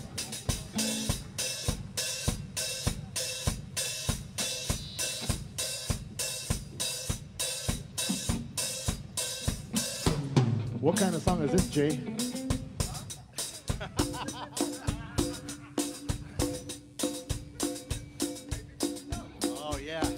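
Drum kit playing a steady groove on kick, snare and hi-hat, the drums carrying the music almost alone. A held note from another instrument comes in under the drums in the last few seconds.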